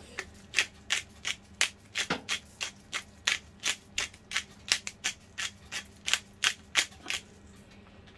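Handheld pepper grinder being twisted over a steak, a dry crunching stroke about three times a second as black peppercorns are ground, stopping shortly before the end.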